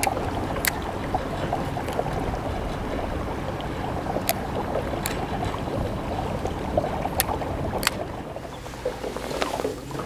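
Steady low rumble from a bass boat on the water, with five sharp clicks spread through it. The rumble drops away about eight seconds in.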